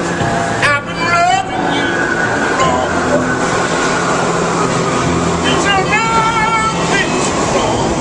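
A street singer's voice in two short wavering vocal phrases, about a second in and again around six seconds, over sustained low accompaniment and a constant bed of street and traffic noise.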